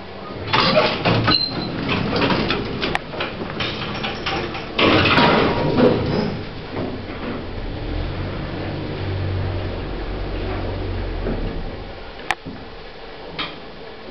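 Vintage 1960s lift answering its DOWN button: the sliding doors clatter shut over the first six seconds or so, then the drive motor hums low and steady as the car travels. A single sharp click comes near the end.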